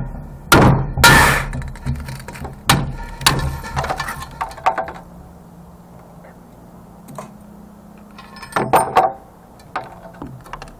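Claw hammer striking the glass neck of a CRT monitor's picture tube, breaking it to free the copper deflection yoke: a handful of sharp blows in the first few seconds, the loudest about a second in with a ringing glassy crack. Near the end there is a quick run of knocks and glass clinks as the broken neck and yoke are worked loose.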